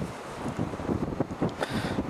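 Wind buffeting the camera's microphone: an uneven low rumble and flutter that rises and falls in gusts.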